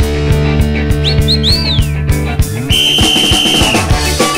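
Instrumental opening of a band's recorded song: a steady beat over held bass notes, with high sliding whistle-like notes about a second in and a single long high note near the end.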